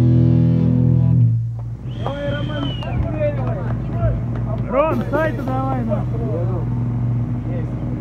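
A punk band's song ending on a loud chord that cuts off about a second in, then a steady amplifier hum under people shouting between songs.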